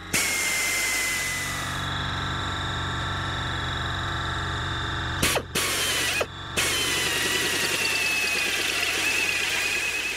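Pneumatic air drill running at speed as it drills into a plastic filter housing frame, a high whine that sags in pitch as the bit bites. It stops briefly twice, about five and six seconds in, then runs on until it winds down near the end.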